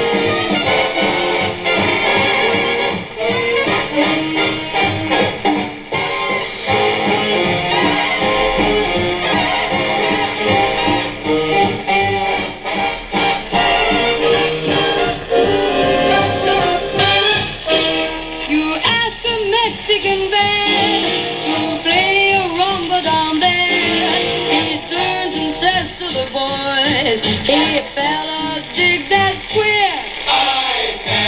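Music with a singer playing over the loudspeaker of a restored 1938 Airline 62-1100 console tube radio tuned to a broadcast station.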